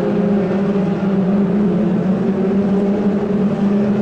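Formula 2 stock car engines running at racing speed around the oval, a steady drone.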